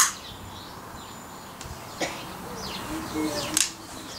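A few sharp clicks of a long-nosed utility lighter being worked to light a pile of shotshell powder, spaced about two seconds apart, over a steady outdoor hiss. Birds chirp in the background.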